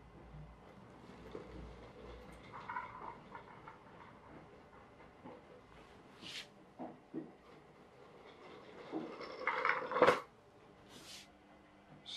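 Homemade rubber-band-powered car, a plastic bottle on cardboard wheels with wooden skewer axles, running across a wooden floor: scattered light clicks and rattles, then a louder cluster of knocks near the end with one sharp knock about ten seconds in.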